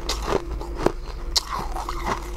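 A person chewing a crunchy mouthful bitten off a frosty white block, with a few sharp crunches about half a second apart.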